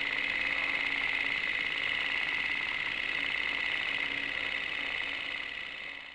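A small machine running with a fast, even rattle and whir, fading a little toward the end.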